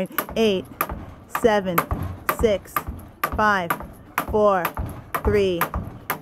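A jump rope slapping a wooden deck in repeated sharp clicks as it is skipped, with a woman counting the last seconds aloud, one falling-pitched word about every second.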